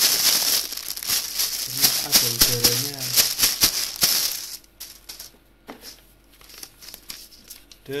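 Plastic packing bag crinkling and rustling loudly as it is handled and pulled open. After about four seconds it dies down to a few faint rustles and taps.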